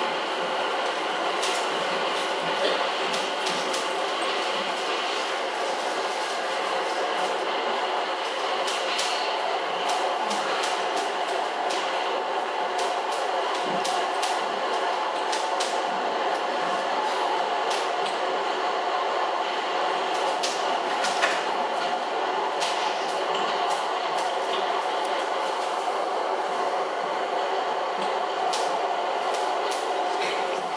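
Metro station sound effect for the stage: a steady train-like noise, with indistinct voices in it and a few faint clicks.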